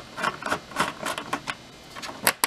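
Small irregular clicks and light scraping of a screwdriver working a T15 Torx screw in the stainless steel edge of a dishwasher door, a few clicks a second.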